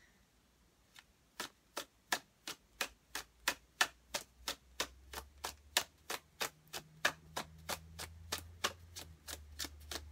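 A tarot deck being overhand-shuffled by hand: a steady run of crisp card clicks, about three a second, starting about a second in.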